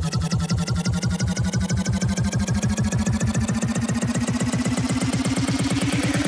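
Neurofunk drum and bass build-up from a DJ set over the club sound system: a fast, pulsing bass stutter whose pitch rises steadily throughout, with a higher rising sweep above it.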